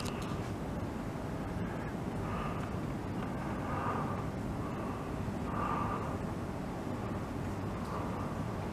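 Crows cawing several times, spaced a second or two apart, over a steady low background rumble.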